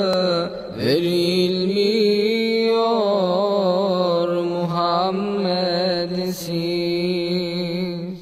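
A male voice singing a Turkish ilahi a cappella, drawing out long, ornamented notes without words. There is a brief pause for breath about a second in, and the voice fades out near the end.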